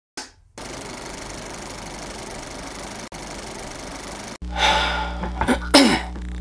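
Film-projector sound effect under a countdown leader: a steady mechanical whirring clatter with hiss that runs for about four seconds, drops out briefly in the middle and cuts off abruptly. After the cut there is a low room hum and a man's sigh before he speaks.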